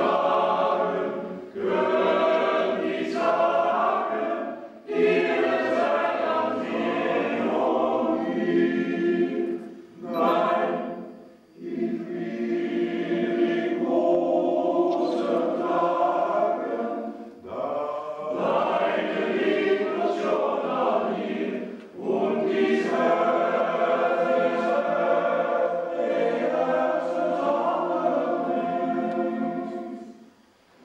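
Men's choir singing in several parts, in long sustained phrases with short breaks between them.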